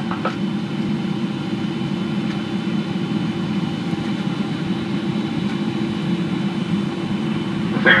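Steady in-cabin noise of a Boeing 777-300ER on final approach, a low even rush of airflow and engines at approach power with a faint steady high whine over it.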